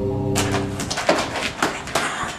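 The held chord of the intro music fades out in the first second. From about a third of a second in come a quick run of sharp clacks as wooden practice swords strike each other in sparring, the loudest ones in the second half.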